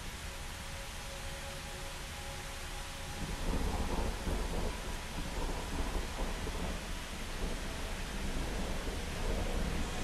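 Steady rain-like hiss with a low rumble of thunder that swells about three and a half seconds in and keeps rolling, over a few faint held tones.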